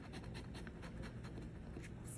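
Large coin scratching the coating off a scratch-off lottery ticket: a rapid run of faint scratching strokes.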